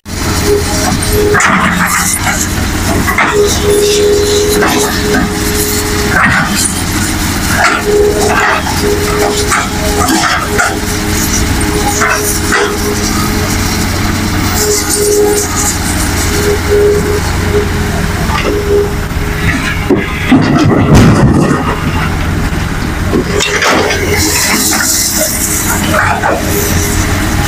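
Hitachi hydraulic excavator's diesel engine and a dump truck's engine running steadily, with a hydraulic whine that comes and goes as the excavator's arm and bucket move. A louder burst of noise comes about twenty seconds in.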